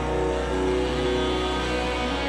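Live rock band music: held electric guitar chords over a steady low bass drone, with no drum beat.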